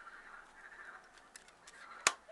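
Near silence: faint room hiss with a couple of light clicks in the second half, from a small plastic camcorder being handled.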